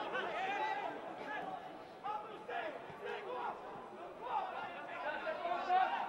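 Several men's voices calling and shouting at once across a football pitch, players calling to one another during play.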